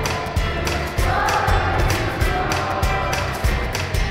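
Youth choir singing over an accompaniment with a steady beat; the voices come in on held notes about a second in.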